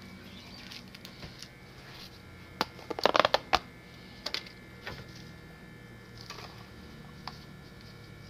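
Handling noise as a blue plastic cup and a metal pan of mealworms in bran are moved about on a counter tray: a quick cluster of knocks and rattles about three seconds in, then a few scattered clicks. A faint steady hum runs underneath.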